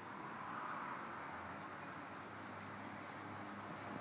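Faint steady room tone: an even hiss with a constant low hum, and no distinct tool sounds.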